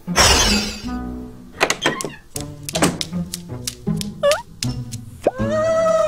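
Cartoon background music with comic sound effects. It opens with a brief whoosh, then runs into a string of knocks and short low notes, with a sliding pitch glide near the end leading into a held tone.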